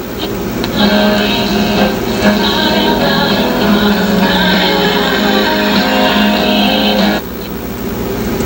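Music from an AM station played through the speaker of a 1960 Philco tube-type AM radio, picked up on a test after its electrolytic capacitors were replaced. The music breaks off suddenly about seven seconds in, leaving quieter noise.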